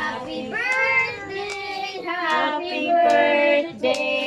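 A child singing in a high voice, long held notes that bend in pitch, with a short break just before the end.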